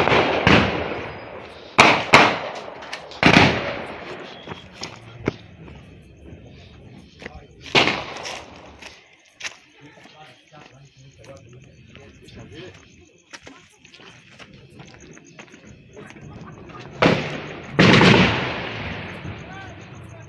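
Scattered gunfire in an exchange of shots: sharp cracks with echoing tails come irregularly, two close together about two seconds in, another a second later, one near the middle and a pair near the end, with fainter shots in between.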